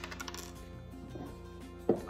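Small ceramic box being handled: a sharp clink that rings briefly at the start, then a louder knock near the end, as ceramic knocks against ceramic. Faint steady background music runs underneath.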